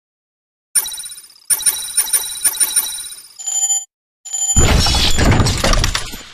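News-channel intro sound effect. A bright, ringing chime starts about a second in and breaks into a rapid run of ringing strikes, then a held tone. After a brief silence, a loud, dense rushing swell with deep bass builds over the last second and a half.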